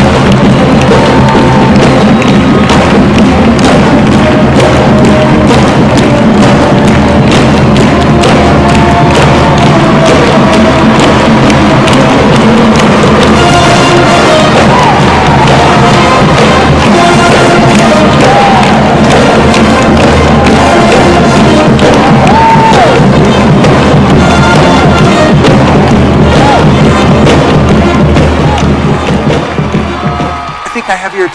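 A live marching band playing: trumpet over a steady, pounding drum beat, with the crowd cheering and clapping along. The music fades out near the end.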